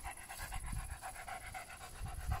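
German Shepherd dog panting in quick, even breaths.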